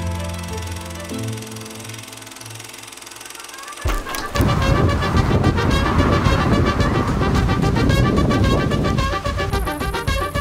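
Background music: soft held notes fade down, then about four seconds in a loud, lively rhythmic band piece starts abruptly and carries on.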